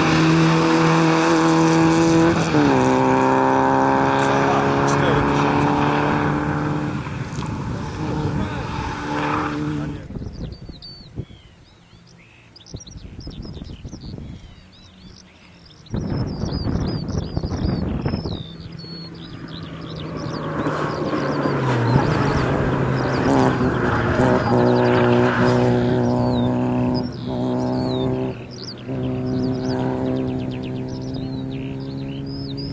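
Peugeot 106 XSi engine running at high revs, with a drop in pitch at a gear change about two and a half seconds in. About a third of the way through it breaks off, leaving birdsong and a brief loud rushing noise. Then the engine comes back at high revs for the last third, with another pitch step partway through.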